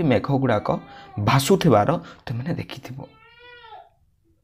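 A man speaks, then a cat meows once near the end: a single call under a second long that wavers and falls in pitch at its close.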